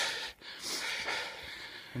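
A man's breathing close to the microphone between sentences: a short breath out right at the start, then a longer breath that runs on until the next word.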